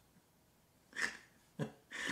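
A man laughing under his breath: two short breathy bursts, about a second in and again half a second later.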